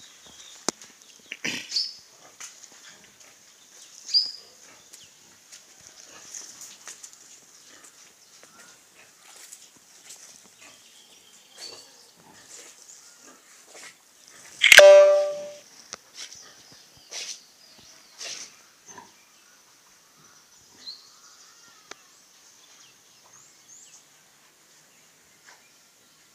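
A farm animal's cry: one loud pitched call about a second long, partway through. Short high chirps and faint clicks come and go around it.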